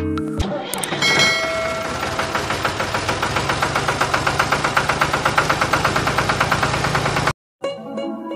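Background music gives way about a second in to an engine starting, which settles into an even chug of about eight beats a second and then cuts off suddenly shortly before the end.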